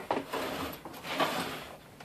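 Quiet, scattered clicks and rubbing from a solid rubber tire and plastic spoked wheel rim being handled as a screwdriver is picked up and set against the tire.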